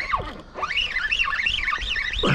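Large spinning reel being cranked fast under load, its gears giving a high whine that rises and falls about four to five times a second with the turns of the handle.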